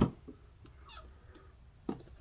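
Clear acrylic cabinet door being swung open on its hinges: a sharp click as it comes free, a few faint taps, a brief faint squeak falling in pitch about a second in, and a soft knock near the end.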